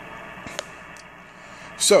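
Icom IC-7300 HF transceiver's speaker giving a steady hiss of band static on 40 metres (7.245 MHz), with two faint clicks in the first second. It is S8–S9 noise coming in from the antenna and feed line, received with the feed line's shield disconnected.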